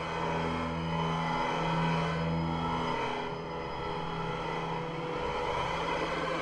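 Electroacoustic music: sustained low drone tones under a dense, noisy texture, swelling slightly about two seconds in.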